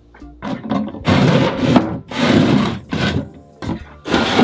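Wooden sliding cabinet doors scraping along their track, pushed across twice, each slide just under a second long, after a few light knocks.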